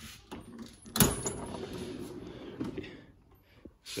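Drawer of a large steel rolling tool chest pulled open on its metal slides: a sharp clunk about a second in, then a rolling rumble for about two seconds as the loaded drawer of sockets slides out.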